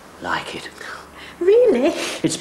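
Soft, whispered speech, then about halfway through a woman's loud exclamation gliding up and down in pitch.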